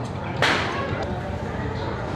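A single sudden swish about half a second in, dying away within half a second, over steady background noise.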